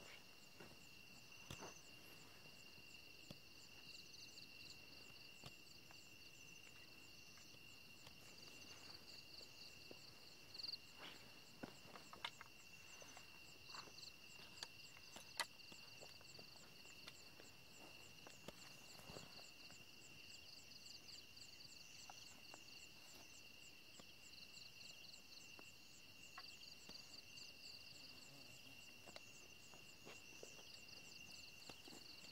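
Faint night insect chorus: a steady high-pitched drone with rapid pulsed cricket chirps layered above it. A few short taps and rustles sound now and then, loudest around the middle.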